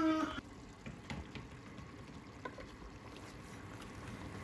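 Faint, low simmering of a lamb and turnip curry in a pot on the stove, with a couple of soft clicks.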